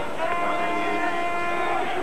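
A held horn-like tone with several overtones, lasting about a second and a half, over the arena's steady background noise.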